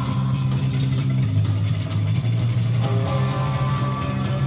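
Punk band playing live in an instrumental passage: electric guitars, bass guitar and drums with no vocals. The bass holds long low notes that change about every second under steady drum hits.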